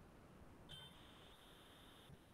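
Near silence: faint room tone on an online call, with a faint steady high-pitched electronic tone that starts under a second in and lasts about a second.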